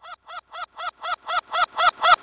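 A hen's cackle with a quarter-second echo added, played in reverse. It comes as a quick train of identical short clucks, about four a second, each louder than the one before.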